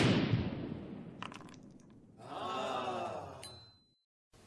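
Title-sequence sound effects: a heavy impact that rings out slowly over about two seconds, a few light clicks, then a sustained effect lasting about a second and a half that fades out just before the end.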